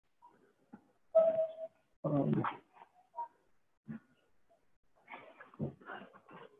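A string of short, faint animal calls in the background, one held as a steady whine just after a second in, another a brief pitched yelp about two seconds in.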